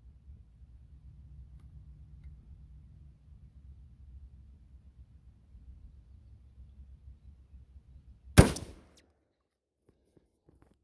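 A single shotgun shot about eight seconds in, firing a handloaded shell of .31-calibre single-aught buckshot; one sharp, loud report with a short tail. Before it, a faint low rumble.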